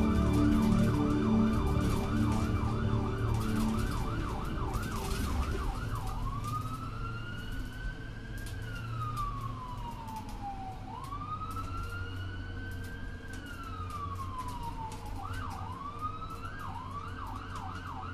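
An electronic siren sounding a fast yelp, about two and a half sweeps a second, switching about six seconds in to a slow rising-and-falling wail for two long cycles, then back to the fast yelp near the end. Music fades out under it in the first few seconds.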